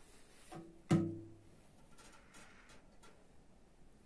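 A single hollow knock about a second in, ringing briefly with a low tone, as the fuel-pump assembly and its hoses are handled; a softer bump just before it and light clicks and rustles of handling after.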